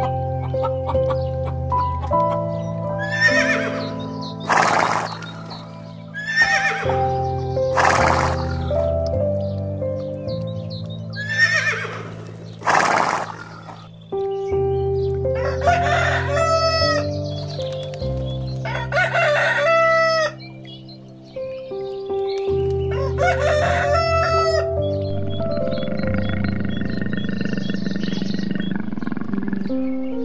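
Chickens calling over background music: three loud squawking calls in the first half, then a rooster crowing three times, each crow about a second and a half long. Only the music goes on near the end.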